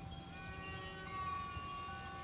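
Faint bell-like ringing tones at several different pitches, each held steadily and overlapping, with new tones coming in about half a second and a second in.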